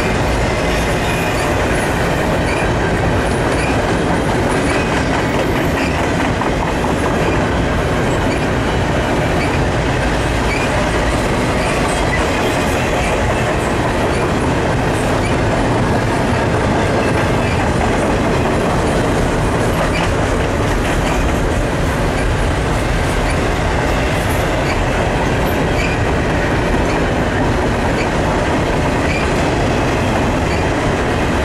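Double-stack intermodal container cars of a long freight train rolling past. The steel wheels on the rails make a steady, unbroken rumble and clickety-clack, with faint short squeaks here and there.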